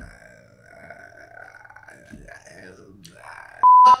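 A faint, drawn-out vocal groan, then near the end a short, loud, steady beep at a single pitch: a censor bleep over a spoken word.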